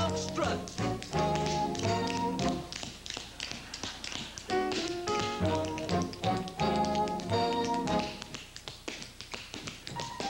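Tap shoes clicking in a quick, dense rhythm on a hard stage floor, over a dance band that plays in short phrases. The band breaks off about three seconds in and again near the end, leaving the taps alone.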